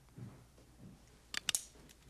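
A single-action revolver being handled, giving three quick, sharp metallic clicks about a second and a half in.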